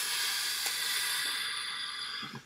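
Scissors cutting through white cloth: a steady rasping hiss of the blades shearing fabric, starting suddenly and holding an even level.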